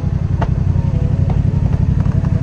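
Yamaha FZ-07's parallel-twin engine running steadily at low revs, a fast, even low pulsing with no revving.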